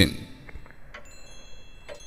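Soft, high-pitched chimes ringing in a story's sound-effect bed, with new notes entering about a second in and again near the end.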